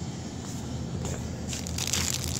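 Crackling, rustling noise that starts about one and a half seconds in, over a low steady background rumble.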